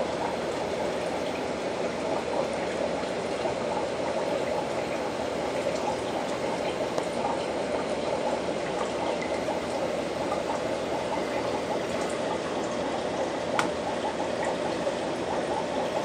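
Small aquarium filter running, its returning water trickling and splashing into the tank in a steady, unbroken stream. A single faint click sounds about three-quarters of the way through.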